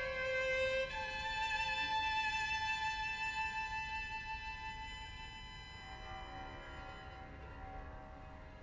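String quartet playing slow, held notes: a high violin line moves to a new note about a second in, then the sound grows gradually softer, with quieter, lower sustained notes near the end.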